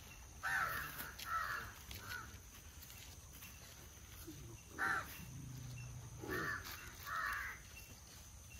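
Crows cawing: about six harsh caws, three in the first two seconds and three more in the second half.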